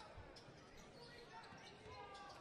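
Faint basketball dribbling on a wooden court under low arena crowd noise.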